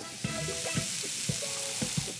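Ground beef burger patties sizzling steadily in a medium-high cast iron pan.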